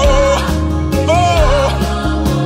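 Haitian gospel worship music: a wavering melodic line with vibrato over a steady bass and regular drum beats.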